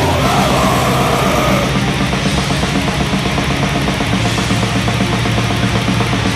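Blackened death metal recording: dense distorted guitars and rapid drumming, with a wavering higher line over the first couple of seconds.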